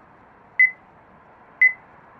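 Pedestrian crossing signal beeping as it counts down: short, high single-pitched beeps about once a second, over a faint steady hiss.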